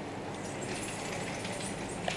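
Soil and sand being mixed together by hand, a continuous gritty rustling and scraping, with a steady low hum underneath.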